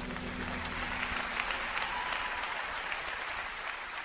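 Concert audience applauding, with the band's last held notes fading out in the first second; the applause slowly thins toward the end.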